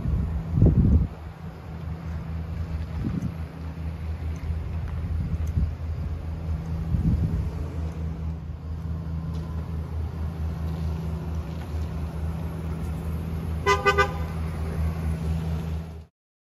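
Chevrolet Silverado pickup running with a steady low rumble as it drives off, louder for a moment about a second in. Near the end a car horn gives a quick double toot.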